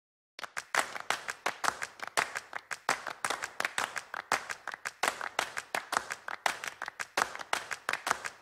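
Clapping: a quick, uneven run of sharp hand claps that starts about half a second in and keeps going.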